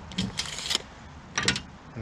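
A steel tape measure's blade rattling as it retracts, then a few sharp clicks about a second and a half in.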